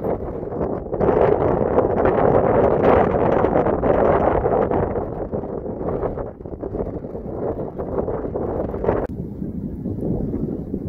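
Wind blowing across the microphone in loud, uneven gusts, with a sudden drop near the end.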